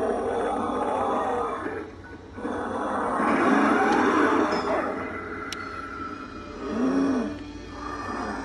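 A life-size Pennywise clown animatronic playing its recorded sound track: a voice with music, in two long stretches, then a short low sound about seven seconds in.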